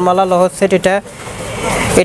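A man talking for about a second, then a rush of noise that swells for the last second.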